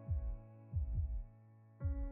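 Quiet background music under a pause in the narration: a held synth chord with three deep bass thumps that fall in pitch, then fading out.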